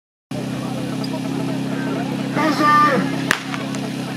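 A steady engine hum throughout. Near the end a short spoken starter's command is followed by a single sharp starting-pistol shot, the signal that sets the team off on its firefighting-sport attack.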